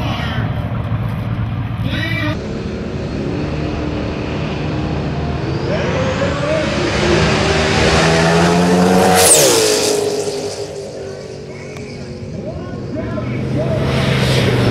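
Turbocharged Mustang drag car accelerating hard down the strip, its engine note climbing steadily, then passing close by with a sharp drop in pitch about nine seconds in and fading away down the track.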